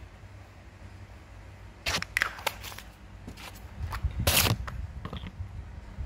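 Close-up handling noise: a quick cluster of sharp clicks about two seconds in, then a longer scrape or rub about four seconds in, over a low rumble from the phone being held.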